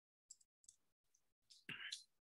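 Near silence broken by a few faint, short clicks, with a brief faint voice sound near the end.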